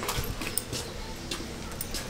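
A few light clicks and ticks from a patio door's lever handle and lock being worked to lock the door.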